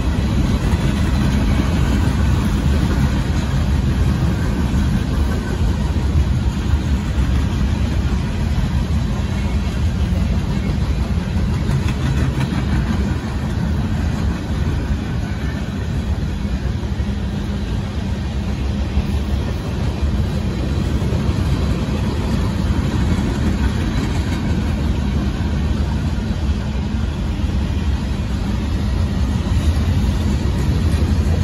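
Freight train of boxcars rolling past at a grade crossing: a steady low rumble of wheels on rail.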